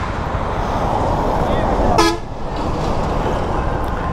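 Road and traffic noise around a moving motorcycle, with a short vehicle horn toot about two seconds in.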